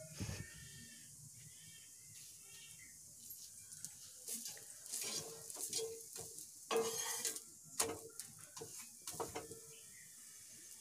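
A metal spatula scraping and tapping against an iron tawa as an aloo paratha frying in oil is lifted and flipped, with faint sizzling. The scrapes and clicks come in a cluster from about four seconds in.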